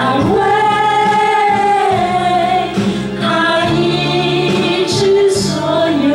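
A small group of women singing a Mandarin worship song together into microphones, holding long notes between phrases.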